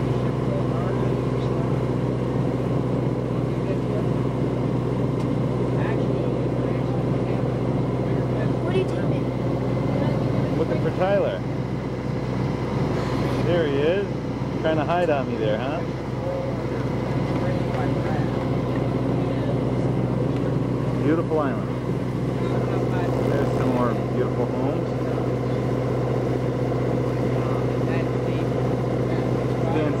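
Motorboat engine running steadily under way at cruising speed, a constant even hum.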